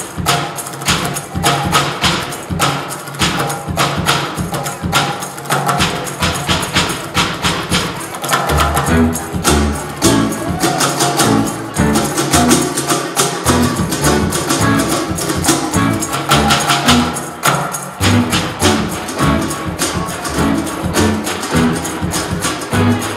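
Live band music built on fast stick drumming on a homemade kit of plastic tubs and a mounted wooden block. Plucked low bass notes come in about eight seconds in.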